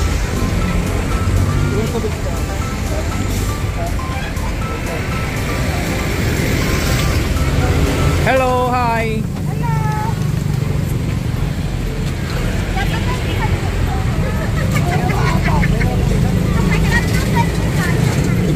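Voices talking over a steady low rumble of passing road traffic; one voice rises in a short pitched call about eight seconds in.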